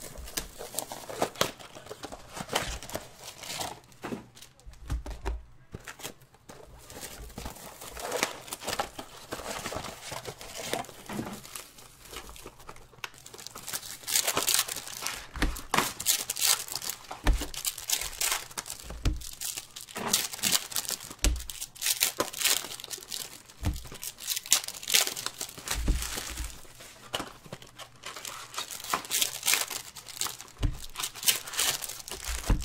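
Panini Prizm trading-card packs being torn open by hand: irregular crinkling and tearing of the foil wrappers, busier and louder in the second half.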